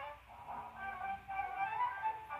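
Instrumental startup music of an old ITV station, played from a television set behind the IBA caption slide: a slow melody of held notes.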